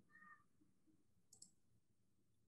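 Near silence: room tone, with a faint short tone just after the start and a couple of faint clicks a little past the middle.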